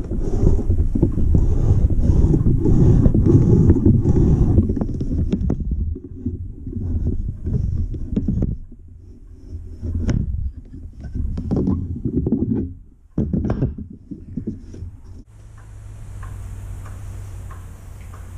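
A wooden book plough (ploughing press) pushed back and forth along a clamped book block, its blade shaving strips off the edge of coarse handmade paper: a continuous scraping and rubbing for the first few seconds, then shorter separate strokes with pauses between them.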